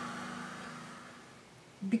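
Craft heat tool blowing hot air over a wet, freshly misted watercolour page: a steady fan hum that fades away over the first second and a half.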